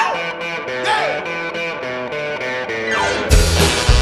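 Live rock-and-roll band starting a song: an electric guitar plays the opening riff alone in quick stepping notes. About three seconds in, drums and bass come in with the full band.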